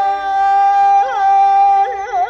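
Male Azerbaijani mugham singer holding a long high note in Chahargah, breaking into a quick warbling vocal ornament about a second in and again near the end.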